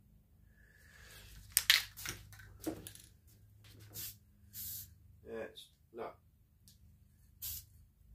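Rust-Oleum aerosol spray paint can being shaken, its mixing ball clattering against the metal, loudest about a second and a half in, with a couple of short hisses of spray.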